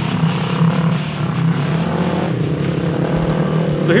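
Dirt bike engines running steadily as two motorcycles climb a rocky hill trail.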